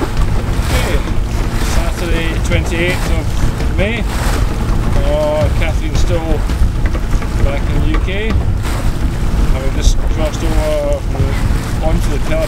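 Wind buffeting the microphone in a steady low rumble, with water washing past the hull of a small open boat under way in a choppy sea.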